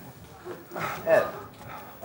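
A man's voice saying one short word about a second in, between stretches of quiet.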